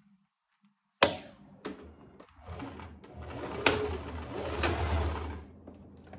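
Domestic electric sewing machine: a sharp click about a second in, then the motor and needle run steadily for about three seconds, stitching a short seam, and stop.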